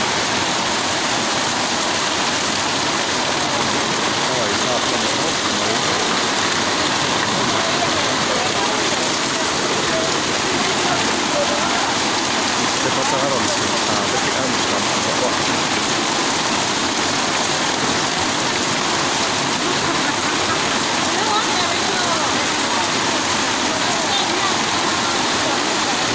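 Heavy rain pouring and floodwater rushing through a street, a steady, even wash of water noise, with people's voices faintly in the background.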